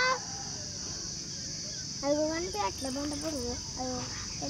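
A steady high-pitched chorus of insects, a continuous even buzz. Quiet speech comes in during the second half.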